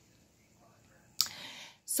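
A pause in near silence, then a little over a second in a mouth click and a short audible breath in, lasting about half a second, with another small click just before speech.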